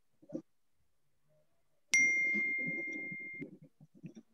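A single electronic chime, a ding about two seconds in that rings at a steady high pitch and fades away over about a second and a half.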